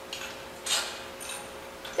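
A few light metal clinks and scrapes as assembly hardware is handled: a spacer and crankshaft arm being fitted onto a long bolt through the handle. The loudest clink comes a little under a second in.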